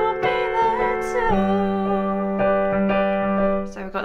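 Piano playing a held D7 chord, with D and A in the bass, that changes to a G major chord about a second in. This is the end of the pre-chorus resolving into the first chord of the chorus.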